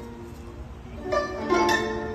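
Guzheng being plucked: a few notes ring on, then two louder plucked strikes in the second half, about half a second apart, ringing on afterwards.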